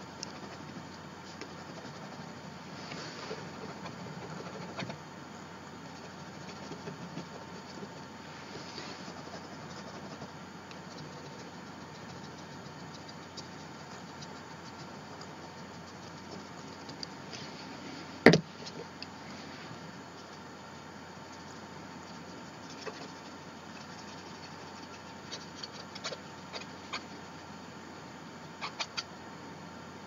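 Faint scratching of a marker tip being rubbed over a paper journal page, over a quiet room hum with a thin steady tone. One sharp knock comes about eighteen seconds in, and a few light ticks near the end.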